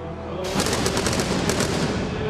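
Stage pyrotechnics firing: a rapid string of sharp cracks, starting about half a second in and lasting about a second and a half, over held entrance-music tones.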